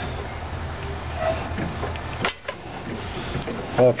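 Hand-turned spring compressor on a motorcycle front shock being wound back to loosen it: a steady mechanical noise of the threads turning, with one sharp click about two seconds in.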